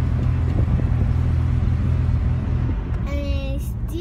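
Inside the cabin of a moving carbureted Mazda RX-7 (SA22C): a steady low engine drone with road and wind noise, and a few light rattles about half a second in. The drone drops in level near the end.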